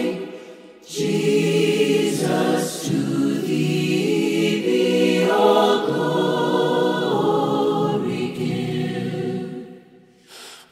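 Choir singing held chords, with no lyrics made out, the harmony shifting about every second. The sound dips briefly just after the start and fades out near the end.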